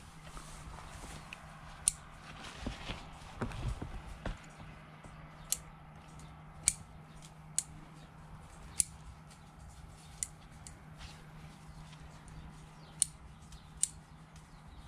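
Hand pruning shears snipping on Shine Muscat grapevines during shoot and cluster thinning: about eight sharp clicks at irregular intervals. Leaves rustle and there is handling noise about two to four seconds in, over a faint steady hum.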